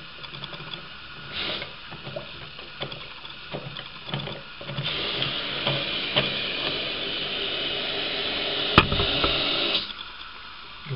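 Light plastic clicks and handling of a toilet cistern's inlet valve as it is adjusted to raise the water line. About five seconds in, a steady hiss of water flowing through the valve into the cistern starts. A sharp click, the loudest sound, comes near the end.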